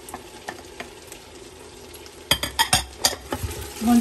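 Onions and tomato paste frying with a soft sizzle in a stainless-steel pot. A little past halfway, a wooden spoon starts stirring and knocks against the pot in a quick run of clacks lasting about a second.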